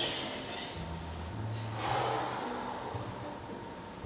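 A woman's forceful breaths through the mouth and nose while she squats with a kettlebell, two strong puffs about two seconds apart: the breathing of effort.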